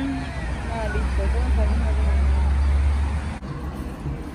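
Outdoor ambience above a beach road: a steady low rumble with faint voices over it. About three and a half seconds in it cuts off abruptly to a quieter indoor background.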